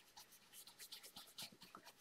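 Faint scratching of an ink-blending brush rubbed back and forth over cardstock, as small irregular strokes.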